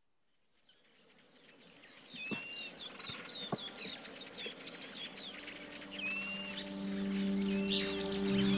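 Rural outdoor ambience fading in: a steady high-pitched insect drone with repeated bird chirps. About six seconds in, low sustained tones enter as background music begins.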